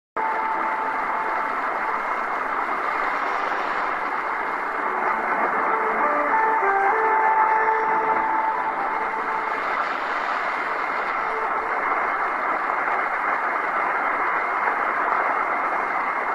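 Weak, distant shortwave AM broadcast of Radio Teos on 11650 kHz heard through an Eton Satellit receiver: dense hiss and static with faint music notes breaking through, clearest in the first half. A thin steady whistle sits over the noise.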